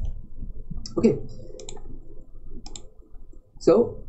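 A few light, sharp clicks, about a second apart, between short spoken words.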